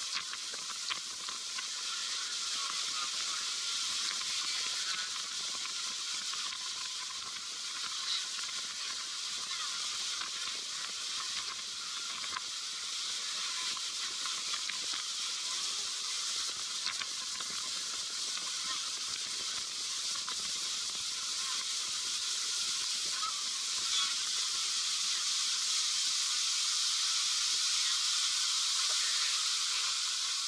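Steady hissing rush of wind and water spray past a speeding open tour boat, growing gradually louder over the last few seconds.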